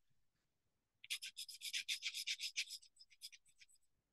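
Derwent pastel pencil rubbing on watercolour paper in quick back-and-forth strokes, about nine a second. It starts about a second in and thins to a few scattered strokes near the end.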